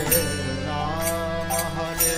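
Devotional kirtan: voices chanting a sung melody over a sustained instrumental accompaniment, with a regular percussion beat.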